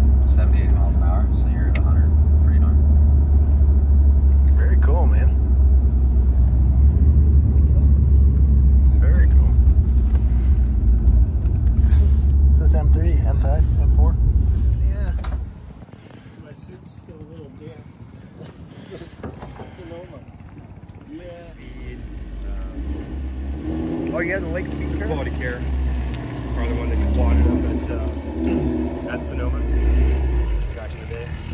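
Steady low drone of a BMW's engine and tyres heard inside the cabin while it is driven on a race track. About halfway through it cuts off, and a quieter outdoor scene follows in which a Ford Mustang race car's engine runs and grows louder near the end as the car pulls away.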